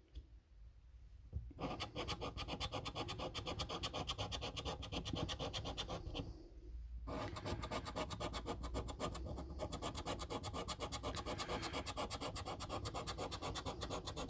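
Coin scratching the coating off a paper scratchcard in rapid back-and-forth strokes, starting about a second and a half in, with a short pause just after the middle.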